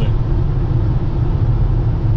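Steady road and engine noise inside a van's cabin while it drives along a multi-lane highway, a constant low rumble of tyres and engine.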